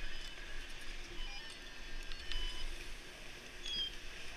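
A few short, high electronic beeps from the RFID lift-ticket scanning gates at a chairlift loading area, in the middle and near the end, over steady outdoor background noise.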